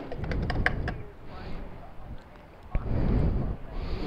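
A fuel pump nozzle being hung back on the pump, a quick run of clicks and clatter in the first second, over a low rumble that grows louder near the end.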